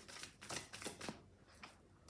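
A deck of reading cards shuffled by hand: a quick run of soft card-on-card snaps in the first second, then a few spaced-out flicks.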